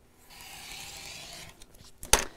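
Rotary cutter drawn once along a quilting ruler, slicing through fabric onto a cutting mat: a steady hiss about a second long, then a few faint ticks.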